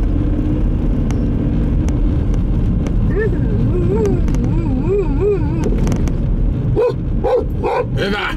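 A dog in a moving car answers a 'speak' command: a drawn-out whine that wavers up and down in pitch, then short barks, about three a second, near the end. Steady road and engine noise from inside the car's cabin runs underneath.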